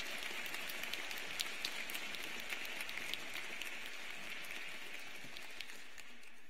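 Audience applauding, many hands clapping at once, the applause thinning out and dying away near the end.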